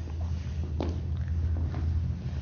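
A couple's dance steps on a wooden floor, a few soft taps and shoe scuffs, over a steady low hum.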